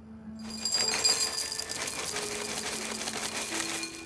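Dry breakfast cereal poured from a cardboard box into a bowl: a dense, steady rattle of pieces hitting the bowl, starting about half a second in.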